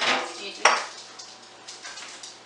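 Deco mesh wreath on a wire wreath form being picked up off a kitchen counter: a short rustle, a sharp clack about two-thirds of a second in, then a few light clicks.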